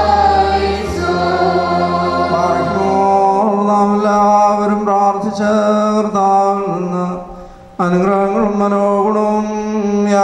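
Choir singing a slow liturgical chant of the Orthodox Holy Qurbana, with long held notes. The singing fades away about seven seconds in and comes back abruptly a moment later.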